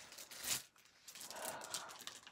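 A sticker sheet being handled: soft paper rustling and crinkling, with a louder rustle about half a second in and a longer crinkle in the second half.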